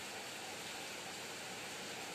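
Steady, even hiss of background noise with no other sound.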